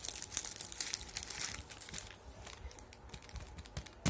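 Plastic sticker sheet and packaging crinkling under the fingers as they are handled: dense crackling for the first two seconds, then lighter scattered crackles.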